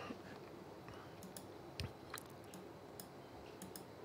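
A handful of faint, scattered clicks from a computer mouse as software options are selected, over quiet room tone.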